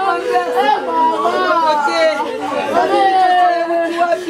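A woman wailing in grief, a mourning lament of long drawn-out cries that slide up and down in pitch, with other voices around her.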